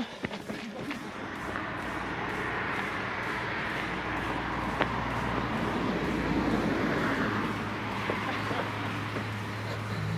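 Wind rushing over the microphone of a camera carried by a trail runner running down a dirt and stone trail. A low steady hum joins about halfway.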